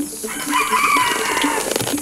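A rooster crowing: one call about a second long, dropping in pitch at its end.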